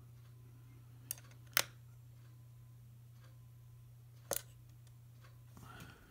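Sharp clicks of the metal push buttons on an N1201SA RF vector impedance analyzer as two of them are pressed and held to switch it on. There are two clicks close together about a second in, the second the loudest, and one more about four seconds in, over a steady low hum.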